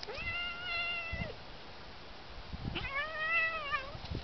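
A cat yowling while wrestling with another cat: two long drawn-out calls, the first rising and then held for about a second, the second wavering up and down. A few low thumps come between them.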